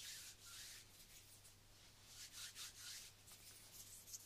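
Palms rubbing together in faint, soft swishing strokes: two at the start, then a quicker run of short strokes about two seconds in.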